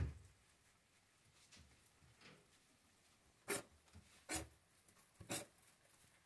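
Quiet, brief, scratchy rustles of young rabbits pulling at and chewing a heap of fresh green grass in a wooden hutch: one at the start and three close together in the second half.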